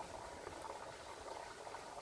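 Faint, steady crackly background noise of outdoor ambience, with no distinct events.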